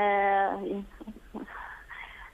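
A woman's voice heard over a telephone line, holding one drawn-out vowel for about half a second at the start. Faint line noise follows.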